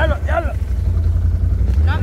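Quad bike (ATV) engine running with a steady low rumble.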